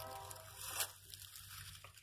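Quiet outdoor background with a low steady hum, and a faint brief rustle a little under a second in as the handheld phone is turned around.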